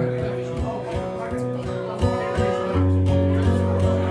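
Steel-string acoustic guitar strummed in chords, played live, with a male voice singing a line around the middle.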